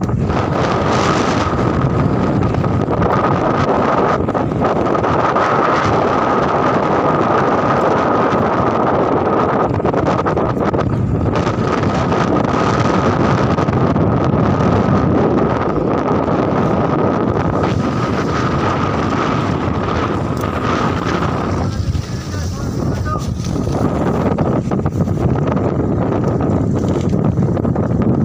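Wind buffeting the microphone over the steady running of an outrigger boat's engine, with a thin steady whine above it. The whine fades and the noise dips briefly about three-quarters of the way through.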